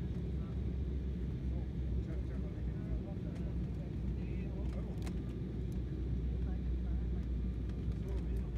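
Steady low rumble of an airliner cabin in flight, the jet engines and airflow heard from a window seat. A sharp click about five seconds in.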